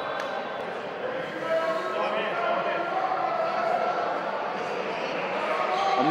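Background voices of players, coaches and spectators in a basketball gym during a stoppage, with a few faint ball bounces early on.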